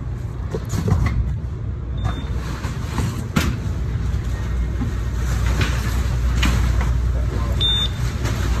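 Steady low rumble of warehouse conveyor machinery, with cardboard packages knocking and thudding as they are handled. A handheld package scanner gives a short high beep about two seconds in and again near the end.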